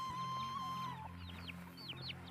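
Chickens with chicks: a run of short, high, falling peeps, coming thick and fast from about a second in, over background music with long held notes.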